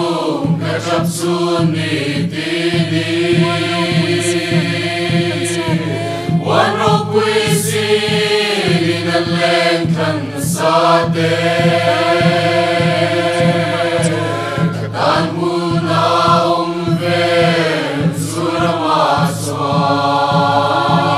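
A group of men and women singing a slow Mizo hymn together in long, sustained phrases. They are accompanied by a steady, even beat on a khuang, the Mizo hand-beaten drum.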